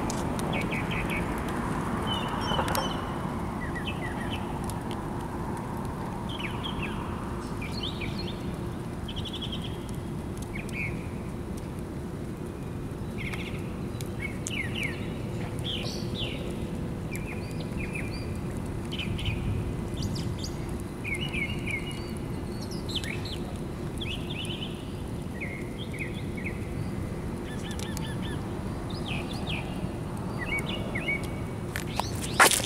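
Birds chirping in short repeated calls over a steady low background rumble.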